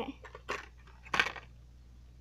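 Two short metallic clinks of small earrings handled in the fingers, about half a second in and a little over a second in, the second louder.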